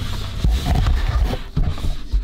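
Irregular low thuds and a few sharp knocks of a person shifting and bumping against the inside walls of a chest freezer, with the camera rubbing and handled close to the microphone.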